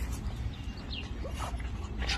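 A dog giving a couple of short, high yelps that fall in pitch, in the second half.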